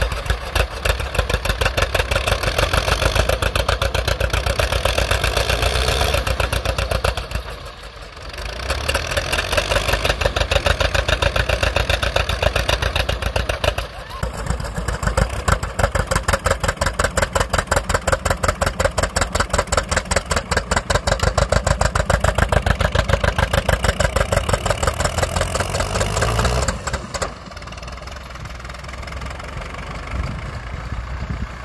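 Two tractor engines working hard against each other under load: a Farmall M's 4BT Cummins four-cylinder turbo diesel and a John Deere G's two-cylinder engine, the exhaust pulsing rapidly. The power eases briefly about 8 and 14 seconds in, then drops back to a lower level near the end.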